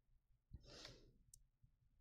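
Near silence, with one faint breath or sigh from a man, about half a second long, beginning about half a second in.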